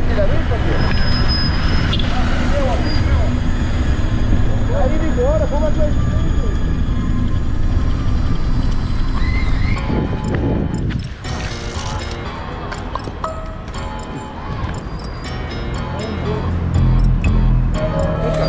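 Background music with voices over street noise; about ten seconds in, the street noise drops away and the music carries on with regular percussive hits.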